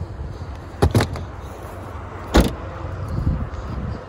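A car boot lid being pulled down and shut on a Jaguar XE: a double knock about a second in, then a louder thud about halfway through.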